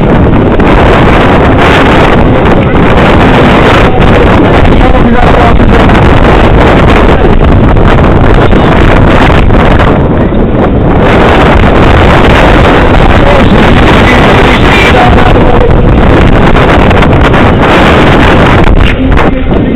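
Loud, steady wind noise on the microphone, mixed with the rumble of a bicycle rolling over paving stones and cobbles.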